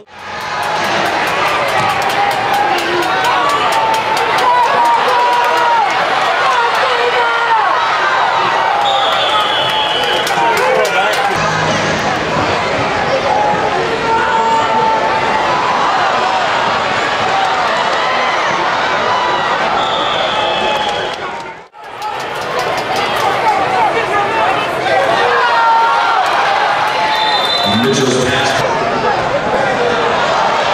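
Arena crowd noise: many voices shouting and cheering at once, with scattered claps. It drops out briefly about two-thirds of the way through.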